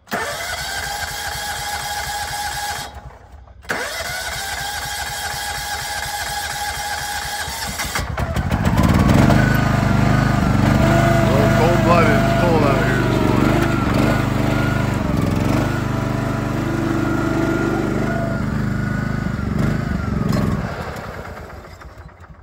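John Deere F525 front-mount mower's engine running. About eight seconds in it grows louder and deeper as the mower is throttled up and driven off, with a wavering whine over the engine note, then it fades near the end.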